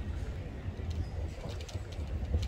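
Wind buffeting the microphone in a steady low rumble, with a bird cooing and faint voices in the background.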